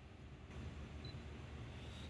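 Faint low steady hum of shop room tone, with no distinct sounds.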